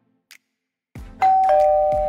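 Two-note "ding-dong" doorbell chime. A higher note sounds about a second in and a lower note follows a moment later, and both ring on steadily. Before the chime there is near silence.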